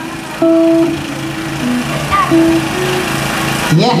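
A live dangdut band playing: held melody notes over a steady, pulsing bass line. Just before the end a man's voice calls out "iya yeah".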